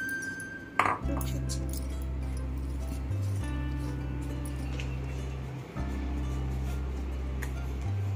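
Background music of sustained low chords that change every two to three seconds. Just before it begins, a utensil gives one sharp clink against the mixing bowl, and a few faint clinks follow.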